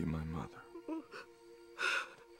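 A character's short, low-pitched vocal sound, then soft breaths and a loud gasping breath near the end, over sustained soft film-score music.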